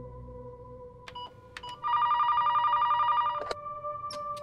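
Corded office desk telephone ringing: one electronic trilling burst lasting about a second and a half, after a few faint clicks, and cut off by a click as the handset is lifted.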